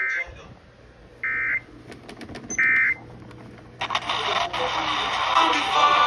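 Emergency Alert System end-of-message data tones from a Sangean weather-alert radio's speaker: three short identical buzzing bursts about 1.3 seconds apart, marking the close of the emergency message. About four seconds in, the station's regular programme audio resumes loudly.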